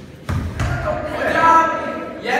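A ball thumps into a kneeling goalkeeper's hands as he catches a shot, one dull impact about a third of a second in, followed by boys' voices.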